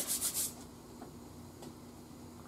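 Hands rubbing briskly together, a few quick dry strokes in the first half second, followed by a couple of faint light taps.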